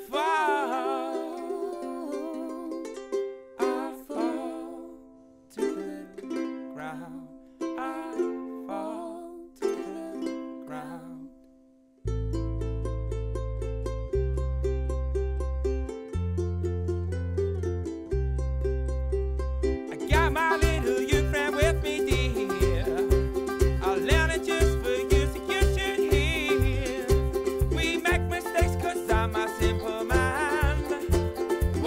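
Folk band playing an instrumental passage of a song. It opens with sparse plucked-string notes that ring and fade, long held bass notes come in about twelve seconds in, and the full band enters with a steady beat about eight seconds later.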